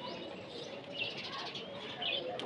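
Chalk writing on a blackboard, faint, with short high squeaks about a second in and again near the end.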